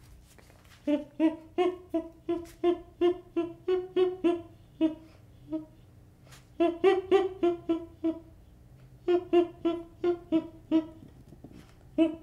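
Baby chimpanzee giving runs of short, evenly pitched calls, about three a second, in three runs with brief pauses between them.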